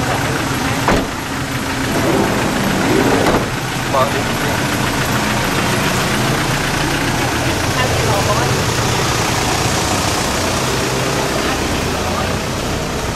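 A motor vehicle's engine idling steadily, with a single sharp knock about a second in.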